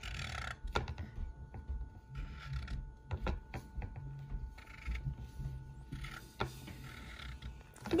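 Felt-tip dry-erase marker drawn across a glass plate in short strokes: a soft rubbing hiss that comes and goes, with a few light clicks of the tip against the plate.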